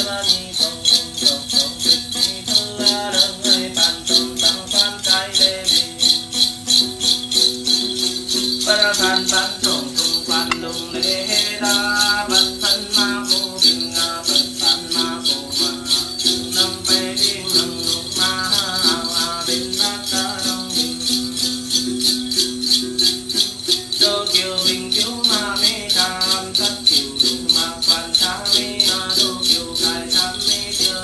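A bunch of small brass bells (the Then ritual's xóc nhạc) shaken in a steady, even rhythm, with a Tày Then chant sung over it.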